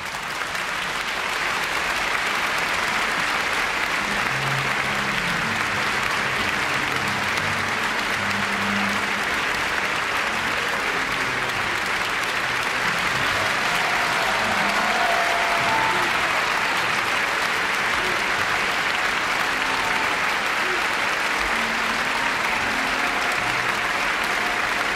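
Opera house audience applauding steadily for the singers' curtain call, the clapping swelling in the first couple of seconds after the orchestra's final chord and then holding at an even level.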